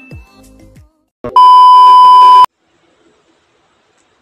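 A loud, steady electronic beep lasting about a second, starting and stopping abruptly. Before it, in the first second, the intro music ends with a falling sweep.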